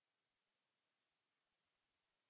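Near silence: a pause in speech over a Zoom call, with nothing but very faint hiss.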